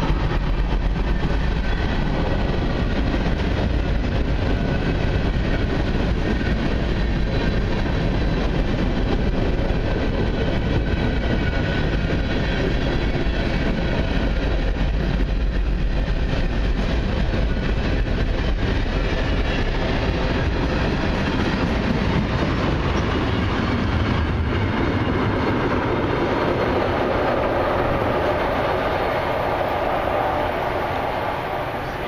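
Freight train cars rolling past: steel wheels on rail in a steady rumble, which thins out near the end as the last cars go by.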